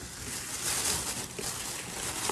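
Thin plastic grocery bag rustling and crinkling as a hand rummages inside it, a soft hiss that swells briefly about half a second in.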